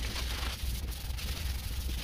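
Wet sanding of a yellowed car headlight lens by hand, using 400-grit sandpaper on a sanding block: a continuous scrubbing of back-and-forth strokes. The sanding is cutting away the yellowed surface layer of the lens.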